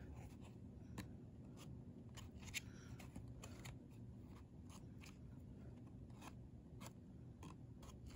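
Faint, irregular clicks and light scrapes of a board book's thick cardboard pages being handled and turned, over a low steady hum.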